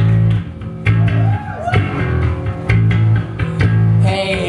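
Live rock band amplified through stage speakers: an electric bass guitar plays a repeating riff of low notes, with electric guitar over it.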